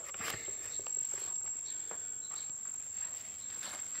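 Faint rustling and light ticks from handling among cucumber vine leaves, over a steady high-pitched whine.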